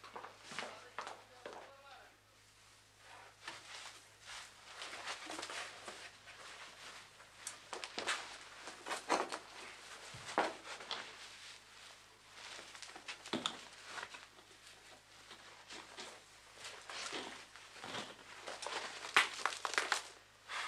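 Scattered rustles, scrapes and crackles of rope, clothing and straw as a tied-up man shifts on a straw-covered floor, working his hands free of the ropes.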